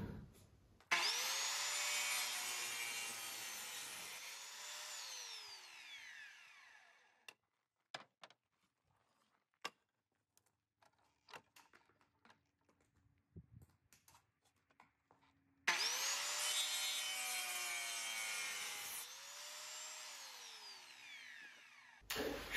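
Sliding mitre saw cutting softwood timber twice, about fifteen seconds apart. Each time the motor starts suddenly with a whine, runs through the cut for about five seconds, then winds down with a falling whine. Light clicks and knocks come in the pause between the cuts.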